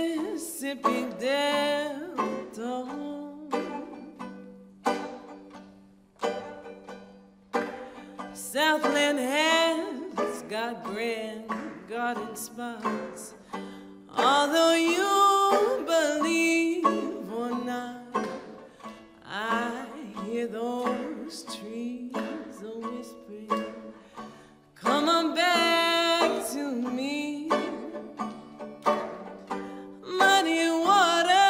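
A woman singing a slow song with her own banjo accompaniment: sung phrases broken by short pauses where only sparse plucked banjo notes sound.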